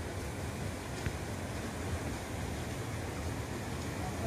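Steady rushing of a flooded, swollen river, with a low rumble of wind on the microphone.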